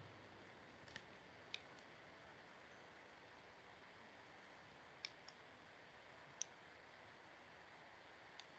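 Near silence broken by a handful of faint, sharp computer mouse clicks, spaced irregularly.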